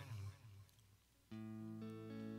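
A steady held chord begins about a second in after a short lull: the start of a song's intro on electric guitar.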